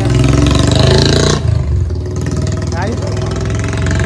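Small two-wheeler engine running with a loud low rumble that drops off suddenly about a second and a half in, then keeps running more quietly at idle.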